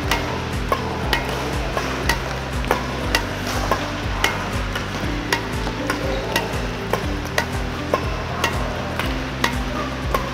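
Sharp racket-on-shuttlecock strikes, irregular at about one or two a second, as badminton shuttles are fed and tapped back in a multi-shuttle drill. Background music with low held notes runs underneath.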